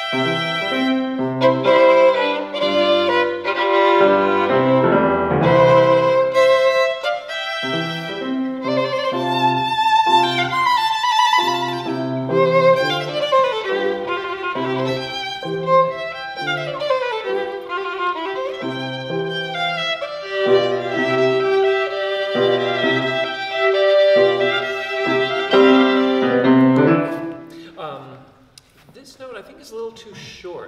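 Violin playing a classical melody with piano accompaniment. The music stops about a second before the end.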